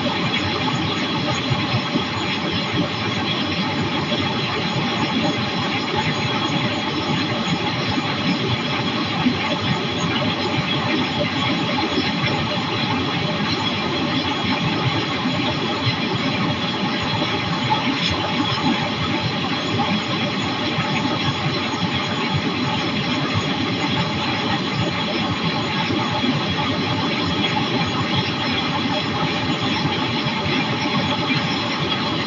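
Flexwing microlight trike's pusher engine and propeller running steadily in cruise flight, an even drone with a rush of air that holds level throughout.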